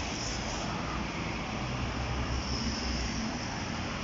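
Steady low background rumble with an even hiss over it, holding at a constant level with no distinct events.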